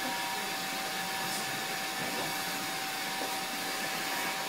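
Steady rushing hiss with a faint, continuous high tone running under it.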